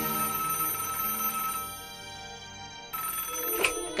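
Telephone ringing twice: one ring ends about a second and a half in, and the next starts near the end.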